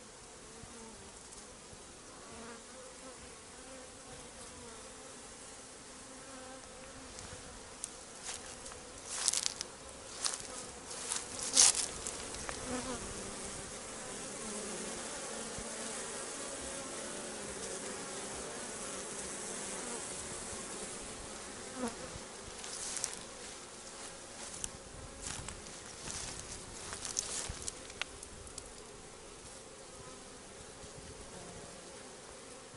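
Honeybees buzzing as they fly around their hives on the last autumn cleansing flight before winter, a steady wavering hum. Clusters of brief sharp crackles come about a third of the way in and again in the last third.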